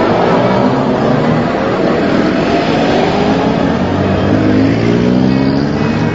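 A motor vehicle's engine accelerating, its pitch climbing, dropping back about halfway, then climbing again, with road noise underneath.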